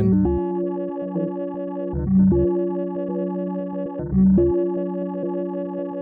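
1979 digital resonator (Buchla-format Mutable Instruments Rings) in modal resonator mode, ringing with sustained pitched notes and rich overtones. A new note is struck about every two seconds, while a quickly cycling envelope modulates its position control.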